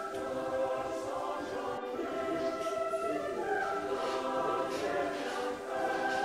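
Choral music: several voices singing together in long held chords that change every few seconds.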